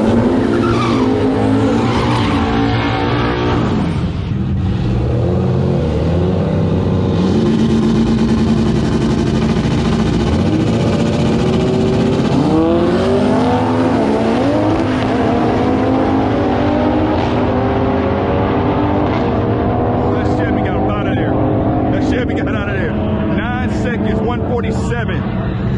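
Drag race car engines, a modified Toyota Supra among them, running at the starting line: idling with repeated revs, the pitch climbing and dropping about halfway through.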